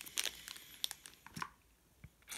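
Clear plastic packaging bag crinkling in the hands as a charging cable is taken out of it: a few short crackles, fading out after about a second and a half.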